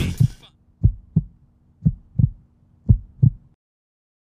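Music cuts off and a heartbeat sound effect follows: three double thumps about a second apart over a faint steady hum, stopping abruptly.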